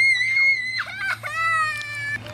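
A young child's playful, high-pitched screams: one long held scream, then after a short break a second, lower one.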